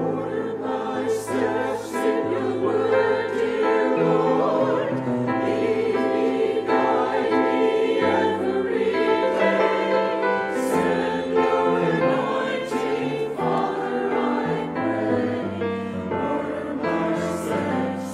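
A mixed church choir of men and women singing in parts, with piano accompaniment.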